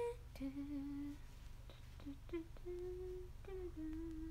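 A young woman humming a tune softly with her mouth closed: a string of held notes that step up and down in pitch, the longest lasting most of a second.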